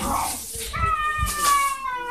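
A long, high animal cry that falls slowly in pitch through the second half, after rustling handling noise.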